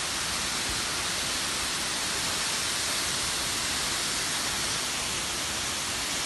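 Steady rushing of a waterfall, an even noise with no breaks.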